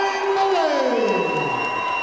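Crowd cheering in a hall, with one long drawn-out shout that falls steadily in pitch.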